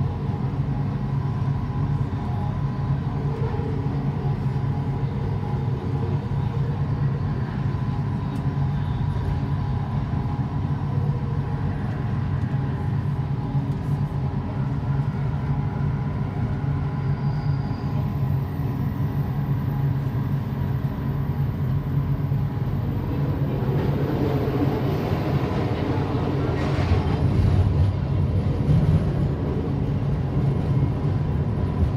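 Driverless Kelana Jaya line LRT train, a linear-motor train, running on elevated track, heard from inside the front of the car. A steady low hum carries a few thin steady tones, and the wheel and rail noise grows louder and rougher for several seconds near the end.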